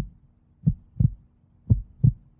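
Heartbeat sound effect: low double thumps, lub-dub, about one pair a second, over a faint steady hum, played as a suspense cue during the countdown.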